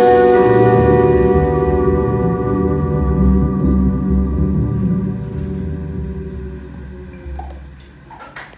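Electric guitar and bass guitar ending a slow instrumental: a held final chord rings and slowly fades away, with bass notes moving underneath during the first half.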